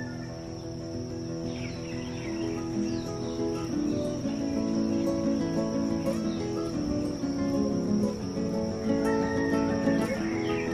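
Background music of slow, held notes that change pitch, with a steady high-pitched tone like crickets beneath it.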